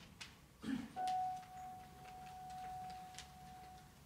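A single soft, steady high note held for about three seconds, sounding the pitch just before a vocal song begins. It is preceded by a low thump, with small scattered clicks from the hall.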